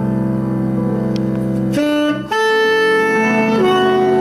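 Tenor saxophone playing long held jazz notes that change pitch every second or so, over piano and double bass. The low accompaniment thins out about two seconds in, leaving the saxophone in front.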